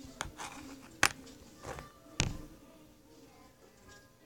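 Handling knocks on the tablet that is filming: three sharp knocks, the loudest about a second in, as the device is bumped and moved, over faint background music.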